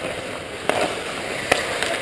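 Hockey skate blades scraping and carving on the ice in a steady hiss, with two sharp knocks less than a second apart.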